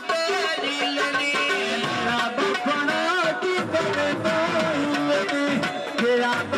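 Amplified live Punjabi folk music (mahiye): a plucked-string melody over a steady percussion rhythm.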